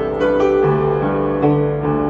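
Upright piano played solo: a melody of struck notes over held bass notes, with a new bass note entering just over half a second in.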